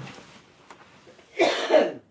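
A person coughs, a short, loud double cough near the end.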